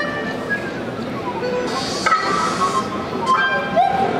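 Live experimental music: a theremin sliding between pitches, with a rising glide near the end, amid electronic effects that add a short burst of hiss about two seconds in.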